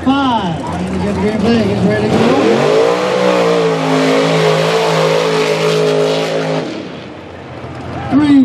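A mud-race pickup truck's engine climbs in pitch about two seconds in and is held at high, steady revs at full throttle through the mud pit, over a rushing hiss of tyres churning mud. Near the end the engine lets off and the sound drops away.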